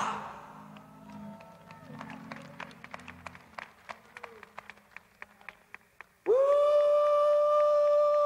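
After a few seconds of hushed quiet with a few faint clicks, a man lets out a loud, long 'Woo!' held at one steady pitch for about two seconds, an exultant shout.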